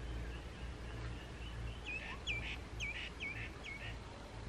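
A bird calling: a run of five short, sharp, repeated notes, about two a second, starting about two seconds in, with fainter chirps before them.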